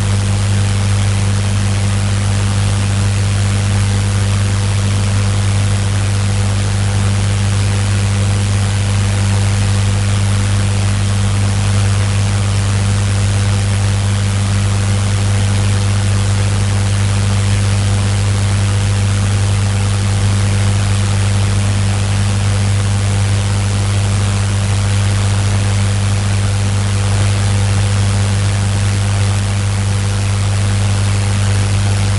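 A steady low hum with an even hiss over it, unchanging, with no other events.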